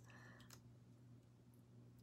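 Near silence: a low steady hum with a few faint clicks of a tarot deck being handled about half a second in.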